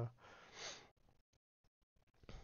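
A man's breath into a headset boom microphone just after he stops speaking: one soft, breathy rush lasting under a second. Then near silence with a few faint ticks.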